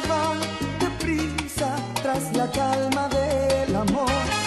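Salsa music: a full band playing, with a bass line stepping through held notes under the melody.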